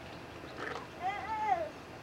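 A small child's wordless high-pitched vocal call, one drawn-out cry that rises and falls in pitch, starting about a second in.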